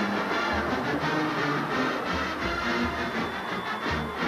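A band playing in a stadium, with held brass-like notes and a few low drum beats, over steady crowd noise.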